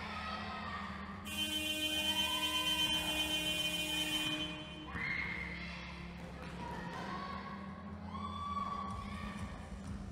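Basketball scoreboard buzzer sounding one steady electronic blast of about three seconds, starting a little over a second in. Ball bounces and short shouts come before and after it.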